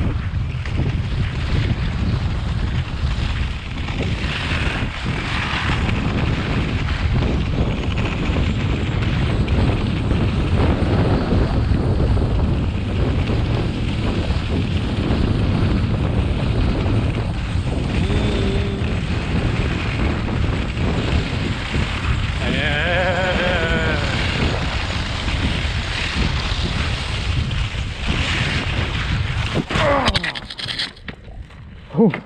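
Heavy wind rushing over the microphone during a fast downhill run on wooden forest skis, with the skis and a towed pulk scraping over a frozen, rutted snowmobile track. Right at the end the run ends in a fall into the snow, taken on purpose to stop, and the rush cuts off.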